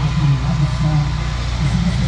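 People talking beside a parked car, their voices mixed over a steady low rumble.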